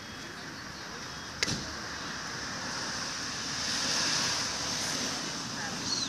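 A passing road vehicle: a steady rushing noise that swells to its loudest about four seconds in and then eases off. There is one sharp click about a second and a half in.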